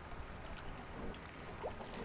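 Quiet pause: a faint, steady low rumble and hiss of background noise, with no distinct event.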